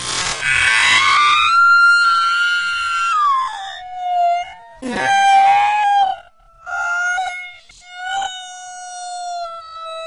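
A woman screaming as a zebra bites her, the recording slowed down so her scream and words are stretched into long, held wails. The first long cry drops in pitch about three seconds in, and further drawn-out cries follow with short breaks between them.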